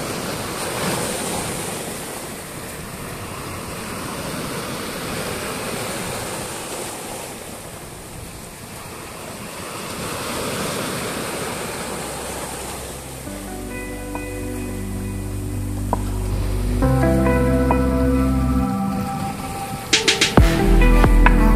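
Sea waves breaking and washing over a rocky shore, the surf swelling and easing in slow surges. About two-thirds of the way through, background music with steady bass notes fades in over the surf.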